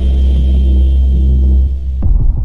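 Cinematic logo-intro sound effect: a loud, deep, steady bass rumble with a few faint held tones above it, easing slightly near the end.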